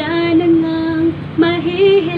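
A woman singing solo in full voice, holding one long steady note, then after a short break a second held note that wavers in pitch.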